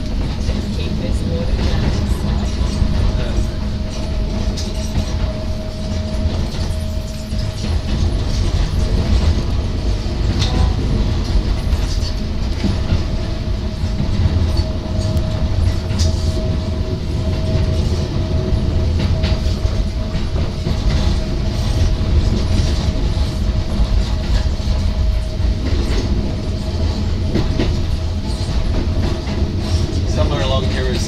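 Hakone Tozan Railway electric train running on mountain track, heard from inside the driver's cab: a steady low rumble of wheels on rail with scattered clicks over the rail joints and a steady thin tone that strengthens midway.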